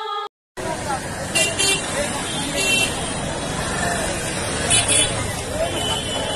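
Street noise of motorcycles riding past in a procession, with crowd chatter and several short horn toots, the first about a second and a half in and the last near five seconds.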